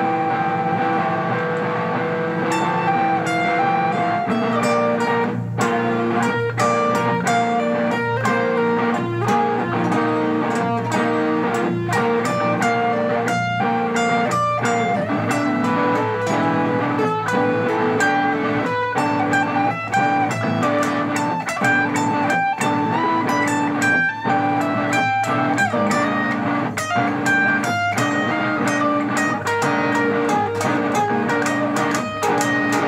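Electric guitar playing an improvised lead line of sustained notes that shift in pitch every fraction of a second to a second, with some quick picked runs.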